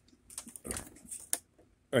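A few light clicks from hands working the front-panel controls of a bench multimeter and DC power supply.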